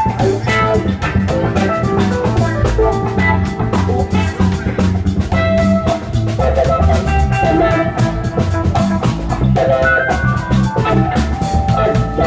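Band jamming: a drum kit keeps a steady beat under a moving bass line and clean electric guitar melody lines.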